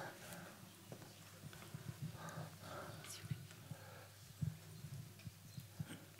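Faint hall sound while waiting for the next question: soft murmured voices a couple of seconds in, and scattered light knocks and handling thuds.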